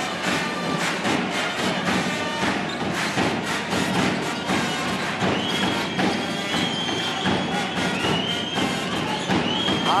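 Home fans' fanfare band: bass drums beating a steady rhythm, with brass playing held high notes from about halfway through, over a clapping, cheering crowd.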